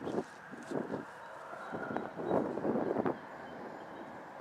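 Footsteps through wet grass, a series of irregular rustles and swishes, with the small foam model plane being handled as it is picked up.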